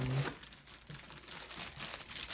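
Clear plastic bag crinkling as a coiled cable sealed inside it is lifted out of a box packed with bubble wrap, a run of irregular small crackles.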